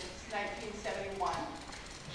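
Speech only: a person talking, the voice carrying in a large hall.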